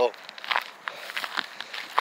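Footsteps and scuffs on loose rock and dry grass as a person climbs a rocky slope, a few irregular steps and knocks.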